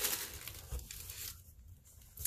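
Tissue paper rustling and crinkling as it is handled, loudest in the first second and dying away after about a second and a half.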